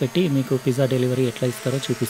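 A man's voice talking steadily, with no other sound standing out.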